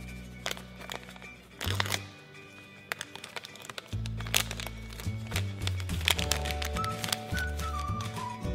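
Background music with a steady bass line, over scattered crinkling and crackling of a plastic foil blind bag being handled and opened.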